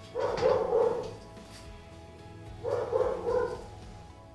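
A dog barking in two quick runs of about three barks each, one at the start and one near the end, over steady background music.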